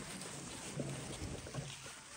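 Rustling of a crowd walking over dry leaf litter, with faint voices underneath.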